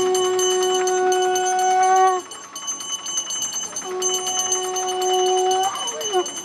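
Conch shell (shankha) blown in two long, steady notes, the first about two seconds long and the second after a short gap, each lifting slightly in pitch as it ends. A bell rings steadily underneath.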